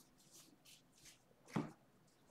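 Chrome trading cards sliding against one another as a stack is flipped through by hand: a few faint swishes, with a louder one about a second and a half in.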